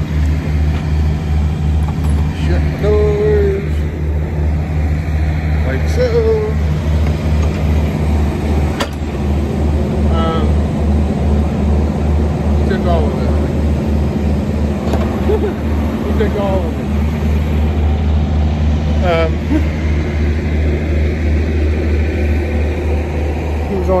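Diesel engine idling with a steady low throb; faint voice-like sounds come and go over it.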